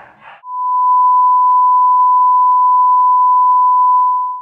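A single loud, steady, pure beep tone, an edited-in censor bleep. It starts about half a second in and holds at one pitch.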